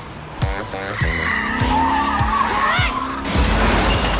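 Car tyres squealing in a skid over music with a steady, regular drum beat. The squeal wavers and climbs in pitch, then a loud burst of noise takes over near the end.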